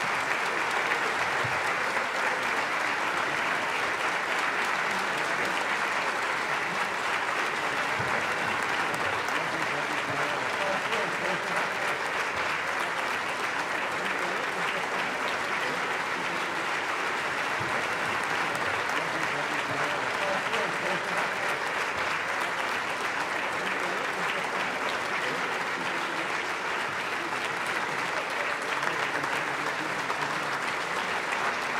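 A concert hall audience applauding steadily after an orchestral performance.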